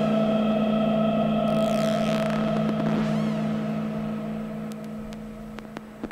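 Electronic synthesizer drone: a low sustained chord held steady with swooping high filter sweeps over it, fading down over the last few seconds, with a few sharp clicks near the end.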